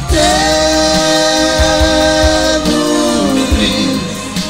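Romani band music: voices hold a long sung note in harmony, stepping down in pitch near the end, with the band's backing underneath.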